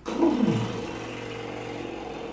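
A man's lip trill: lips buzzing over a voiced tone that glides down about half a second in, then holds a low, steady pitch, as a vocal warm-up to loosen the lips.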